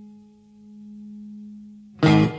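The last note of an acoustic guitar ringing out at the end of the song: one steady low tone that dips and then swells slightly as it decays. It is cut off at the very end by a sudden loud sound.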